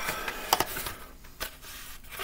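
Plastic blister pack on a Hot Wheels card handled in the hands, crinkling and crackling, with a sharp crackle about half a second in and another near one and a half seconds.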